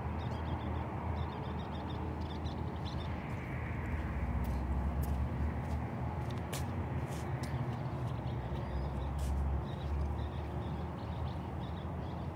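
Outdoor background: a steady low rumble that swells twice, around four and nine seconds in, with faint bird calls over it.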